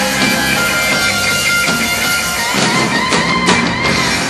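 Live rock band playing, with distorted electric guitars to the fore over bass and drums, in a passage without singing.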